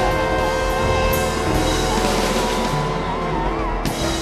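Six trombones with piano, guitar, double bass and drums hold a long closing chord while one line wavers above it. The chord is cut off by a sharp drum hit near the end.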